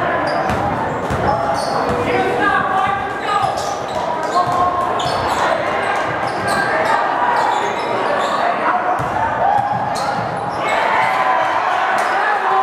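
A basketball bouncing repeatedly on a hardwood gym floor as it is dribbled, the impacts echoing in a large gym over a steady hum of crowd voices.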